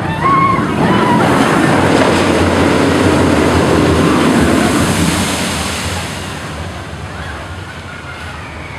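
SheiKra roller coaster train hitting its splashdown pool, throwing up a wall of spray: a loud rush of water that starts suddenly about a quarter second in and fades over the last couple of seconds.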